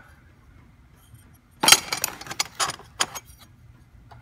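Custom metal pedal pads and their hardware clinking and rattling as they are handled in their cardboard box: a quick run of sharp clinks starting about a second and a half in, with a last few near three seconds.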